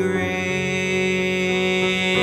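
A male singer holds one long note over sustained piano accompaniment.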